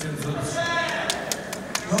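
Light, evenly spaced hand clapping, about four claps a second, with a person's voice heard briefly under it.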